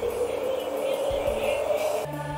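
Music or sound-design playback from the recording software: a noisy drone slowly rising in pitch, with a few short low thumps.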